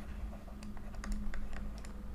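Stylus clicking and tapping on a pen tablet while handwriting, with light irregular clicks over a low steady hum.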